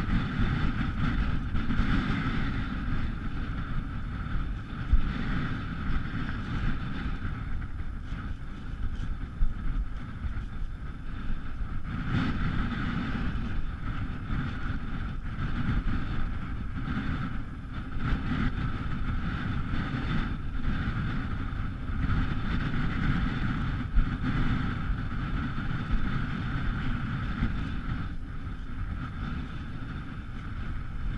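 Strong wind buffeting the microphone, a continuous gusty rumble with small peaks, over a steady mid-pitched whine.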